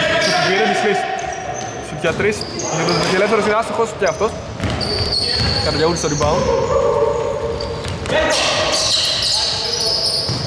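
A basketball being dribbled on a hardwood gym floor, with sneakers squeaking in short high squeals and players' voices echoing in the large hall.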